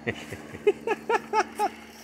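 A man laughing: a run of about five short "ha" bursts, evenly spaced.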